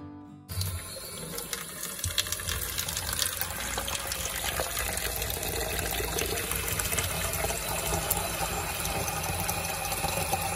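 Kitchen tap running into a clear plastic jug in a stainless steel sink, with a steady splashing rush as the jug fills. It starts about half a second in.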